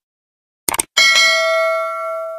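A mouse-click sound effect, a quick double click, then a bright bell ding about a second in that rings on and slowly fades. This is the stock sound of a subscribe-button and notification-bell animation.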